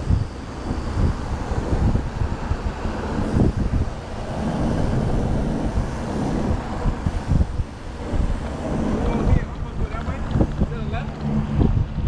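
Wind buffeting the microphone of a camera on a moving bicycle, with the rush of road and car traffic beneath it.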